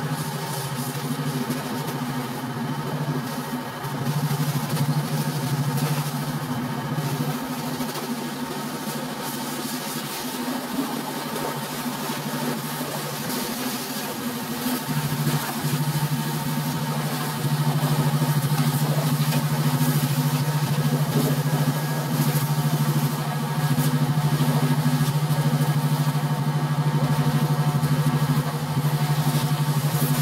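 Pressure washer running, its water spray hitting the tractor's sheet metal and tyres over a steady machine drone. The drone gets louder from about four seconds in and again for the last twelve seconds.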